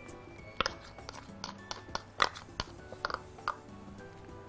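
A metal spoon clicking and knocking against a plastic food processor bowl about ten times at irregular intervals while oil is spooned in, with faint background music underneath.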